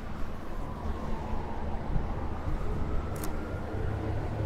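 Downtown street traffic: a steady low rumble of passing vehicles, with a brief click a little after three seconds in.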